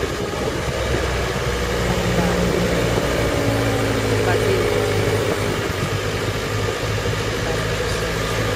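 Engine of an open-topped 4x4 running as it drives along an unpaved farm track. Its note shifts lower partway through, under a steady hiss of wind and road noise.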